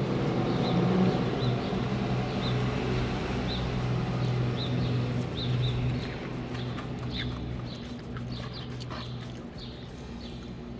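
Short high bird chirps, about one a second, over a steady low hum, with chewing close to the microphone.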